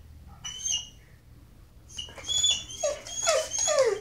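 Dog whining: one brief high whine about half a second in, then after a pause a run of high whines and falling, drawn-out whimpers over the last two seconds, the dog's annoyed protest at its TV show being paused.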